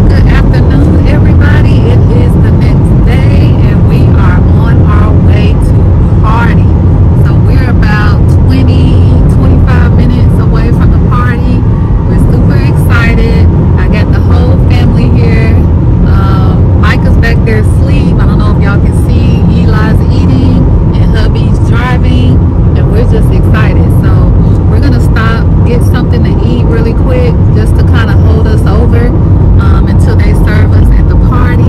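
A loud, steady low rumble with indistinct voices breaking through it now and then.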